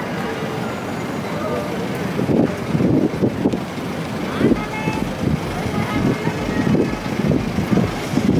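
Busy city street ambience: traffic running steadily, with faint voices of passers-by and uneven low rumbles in the second half.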